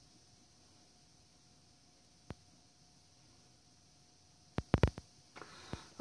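Near silence with a faint steady hum, broken by a single sharp click about two seconds in and a quick cluster of clicks or knocks near the end.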